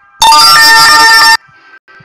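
A sudden, very loud, distorted blast of electronic tones, about a second long, that cuts off abruptly, over faint background music.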